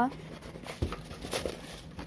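Light rustling and handling noises of a glitter-fabric cosmetic bag being turned over in the hands above a box of shredded paper filler, with a soft knock a little under a second in.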